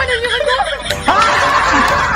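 A man's wordless vocal sounds, wavering up and down in pitch, with a rougher, noisier stretch in the second half.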